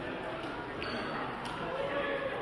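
Indistinct voices echoing in a large sports hall, with a couple of light taps and a short high squeak about a second in.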